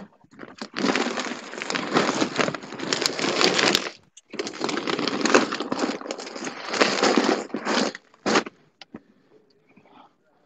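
Close rustling and crackling against the microphone, like clothing or plastic rubbing on it, in two long stretches of about three seconds each, then a short burst about eight seconds in.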